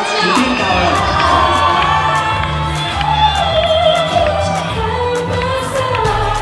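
A woman singing a pop song into a microphone over a band backing with bass and a steady beat of cymbal ticks, with a crowd cheering underneath.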